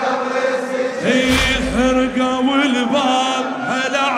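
Male voice chanting a Shia mourning chant (latmiyya) in Arabic, holding long wavering notes over a low drone. A deep bass boom comes in about a second in.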